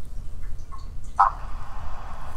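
A man crying quietly, with one short choked sob a little over a second in, over a low steady hum.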